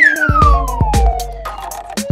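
A whistle-like sound effect gliding down in pitch over about a second and a half, over children's background music with a steady beat.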